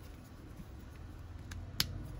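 Plastic joints of a Transformers Kingdom Deluxe Airazor figure being worked by hand, with one sharp click near the end and a fainter click just before it, as a part snaps into place.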